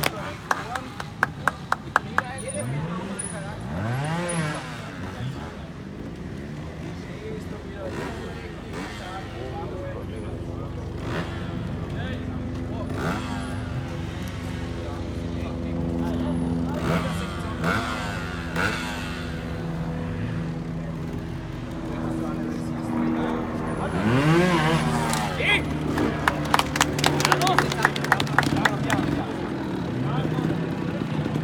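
Trials motorcycle engine running and being blipped as the rider works over the rocks and logs of the section, its pitch rising and falling sharply a few times and holding a steady note in between. Spectators clap at the start and again near the end.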